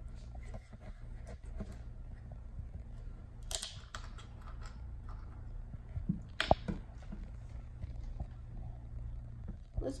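A plastic water bottle being handled and its screw cap twisted open: plastic crackling and a few sharp clicks, the loudest one about six and a half seconds in, over a steady low hum.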